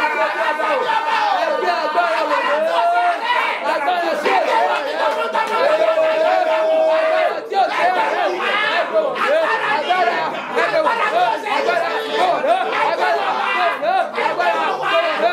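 Loud, overlapping voices in fervent prayer, with one long held cry about six seconds in.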